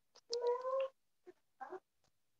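A cat meowing: one drawn-out call of about half a second with a slightly rising pitch, followed by a couple of short, fainter sounds.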